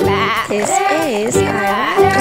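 Children's song backing track with a wavering, bleating voice that swoops up and down in pitch.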